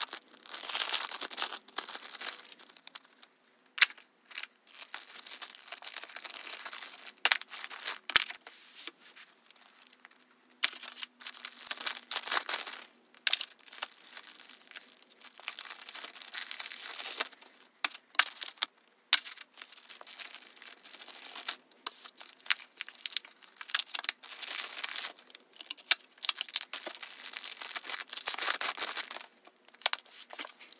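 Plastic album packaging and bags crinkling and tearing in repeated bursts of a second or two, mixed with short taps and flicks of stacks of cards being handled.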